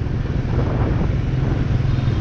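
Wind rushing over a handheld camera's microphone on a moving motorbike, a steady low rumble mixed with the motorbike's running and road noise.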